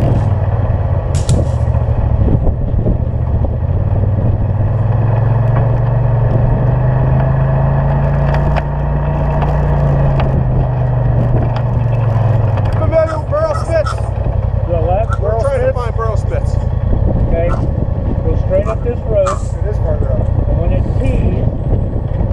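UTV engine running at low speed as the side-by-side rolls up to a stop, its note rising and falling once around the middle, then idling steadily. Over the idle in the second half, people talk faintly.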